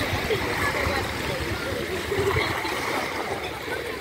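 Background chatter of several people's voices over the steady wash of small waves at the water's edge.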